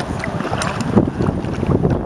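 River water splashing and sloshing around hands holding a fish in shallow current, with wind rumbling on the microphone.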